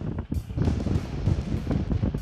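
Wind buffeting the microphone on the deck of a sailboat under way at sea, a loud, uneven low rumble with a brief lull just after the start.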